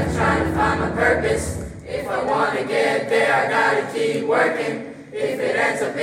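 A mixed youth choir singing a pop-style song in parts, with the bass dropping out about two seconds in and the voices carrying on largely alone.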